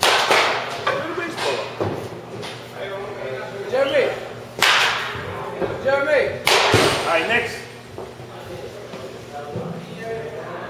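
Baseball batting practice in a cage: three sharp bat-on-ball hits, one at the start, one near the middle and one about two seconds later, each trailing off briefly.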